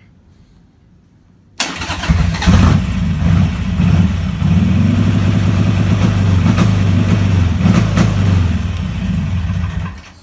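Harley-Davidson V-twin engine started about one and a half seconds in, then revved and held steady at about 3000 rpm against a programmed ignition-module rev limit, dropping back near the end.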